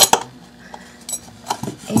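Handling noises from a brass lamp pipe and wooden base being fitted together: a sharp click at the start, then a few light knocks and rubbing near the end.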